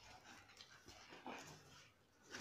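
Near silence, with faint rustling of plastic weaving wire as it is handled and pulled through the basket's knots.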